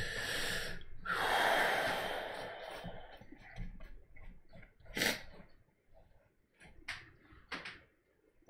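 A man's long breathy exhales, two sighs in the first three seconds, the second one louder, followed later by a few short light taps.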